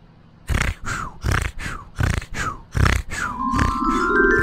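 A man's voice making a quick run of short grunting snorts, about two or three a second, each falling in pitch: cartoon vocal effects for a grimacing character. Mallet-percussion music comes in near the end.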